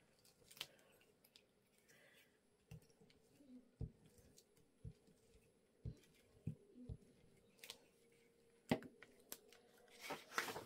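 Faint paper handling: hands pressing and smoothing a white paper envelope on a craft mat, with about ten light taps and rustles scattered through an otherwise near-silent room.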